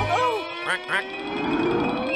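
Cartoon duck character quacking in short, pitch-bending calls over held music notes. A slowly rising tone follows from about half a second in.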